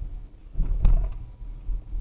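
Steady low road and engine rumble inside a moving car's cabin, with one short sharp knock or clunk a little under a second in.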